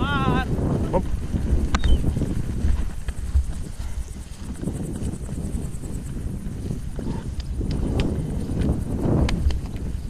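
Horses' hooves falling on grassy ground with rumbling noise, heard from a camera mounted on one of the horses. A brief wavering call sounds at the very start.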